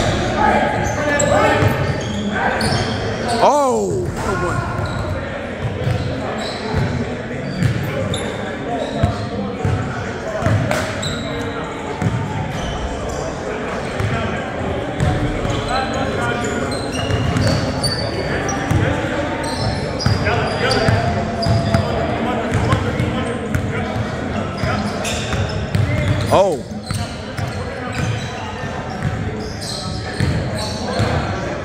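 A basketball being dribbled and bouncing on a hardwood gym floor, with players' indistinct voices echoing in the large hall. Two short falling squeaks come through, one a few seconds in and one near the end.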